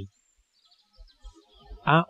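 A pause in a spoken narration: near silence with only a faint high thin trace, before the narrator's voice starts again near the end.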